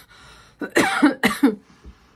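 A woman coughing, about three harsh coughs in quick succession around a second in, after a sharp intake of breath.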